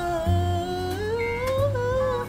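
A man singing a wordless, sustained vocal line that rises slowly in pitch, over backing music with a deep bass.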